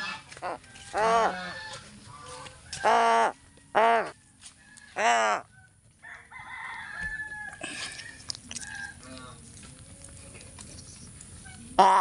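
Pet crows cawing: a run of short, harsh calls, four loud ones in the first half and another at the very end.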